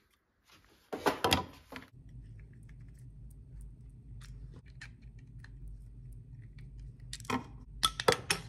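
Screwdriver tip clicking and scraping against a small plastic part, light scattered clicks over a steady low hum, with a louder clatter near the end.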